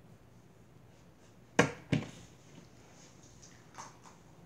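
Two sharp knocks about a third of a second apart, from something handled on the tabletop right by the microphone, followed by a softer click near the end.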